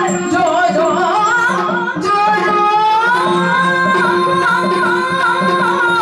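A woman singing a Yakshagana song in a heavily ornamented melodic line over a steady drone. About two seconds in, she settles into a long held note that steps up in pitch and is then sustained.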